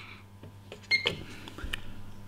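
Button clicks on a Pace MBT soldering station's front panel, with a short high beep about a second in as the station's display is switched from Fahrenheit to Celsius, over a steady low hum.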